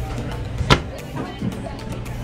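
A pull-out galley cabinet pushed shut, its latch giving one sharp click about two-thirds of a second in, over a steady low hum.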